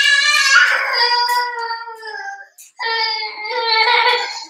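A toddler crying in two long, high wails with a short break about two and a half seconds in, upset over hurt toes.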